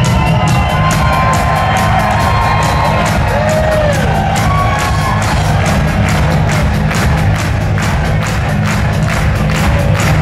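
Heavy metal band playing live, electric guitars, bass and a steady drum beat, with the audience cheering and whooping over it.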